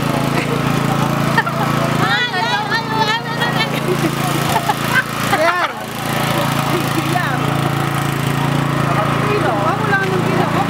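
A small engine running with a steady hum, with people's voices and calls from the crowd over it.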